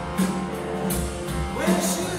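Live rock band playing: sustained keyboard and guitar chords over regular drum hits, with a wavering voice or synth line rising in near the end.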